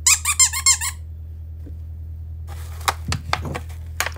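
Squeaker inside a plush dog toy squeezed by hand, giving a quick run of high-pitched squeaks in the first second. A few short clicks of handling follow in the last second and a half.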